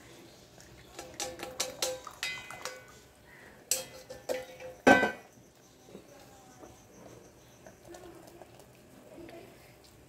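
Metal kitchen utensils clinking and knocking, with short ringing after each strike: a quick run of clinks in the second and third seconds, then one loudest knock about five seconds in.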